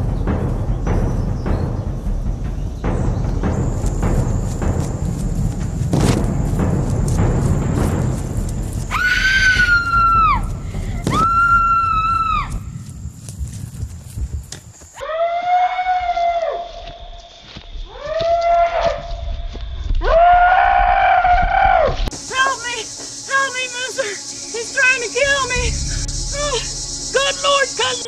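Rustling and thudding footfalls as someone runs through brush, then two long high-pitched screams followed by three lower drawn-out yells that fall off at the end. Music with quick, pitched notes comes in near the end.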